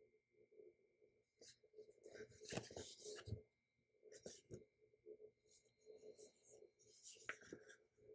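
Faint rustling of paper sticker-book pages being turned and handled, with a few short scrapes of sheets sliding over the planner.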